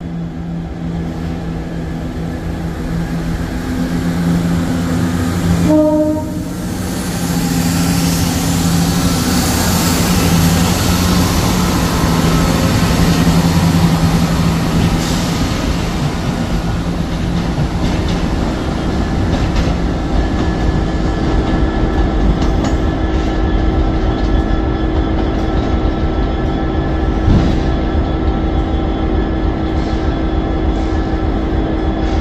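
Northern Class 170 Turbostar diesel multiple unit running past, its diesel engines droning steadily with wheel-on-rail noise, and a short horn sound about six seconds in. The engine drone fades out a little after halfway while the rail noise carries on.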